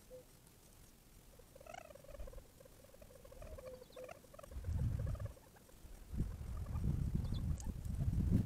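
Quail giving soft, wavering contact calls, a few short notes in the first half. From about halfway on, low rumbling noise comes in and becomes the loudest sound.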